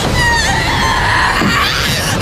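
A woman screaming: a shrill, wavering shriek whose pitch swoops up and down, over a steady low rumble.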